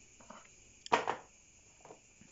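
Woody bougainvillea cuttings set down on a plastic sheet: one short clatter about a second in, with a few faint handling ticks around it.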